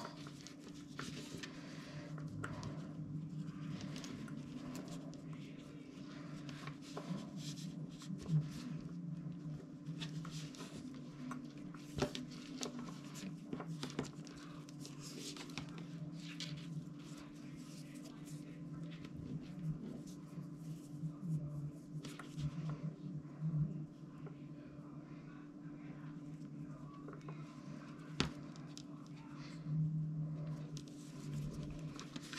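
Paracord rustling and sliding under the fingers as the cords are pushed through a tight gap in the woven collar, with scattered small clicks and taps. A steady low hum runs underneath.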